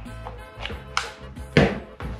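A few short clicks and knocks from a Speakon plug being pushed and twisted into the socket of a Hosa CBT-500 cable tester, the loudest about one and a half seconds in, over steady background music.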